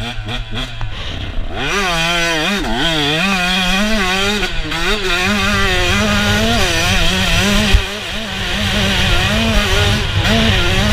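Husqvarna TC125's 125cc single-cylinder two-stroke engine picking up about a second and a half in, then revving hard, its pitch rising and falling again and again as the bike is ridden on the track. A sharp thump comes about three-quarters of the way through.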